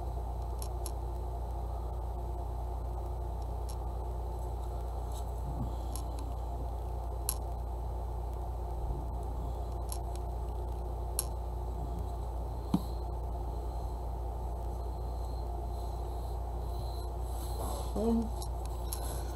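Steady low background hum, with a few faint, sharp taps and light scrapes from handling paper and a squeeze bottle of liquid glue while gluing.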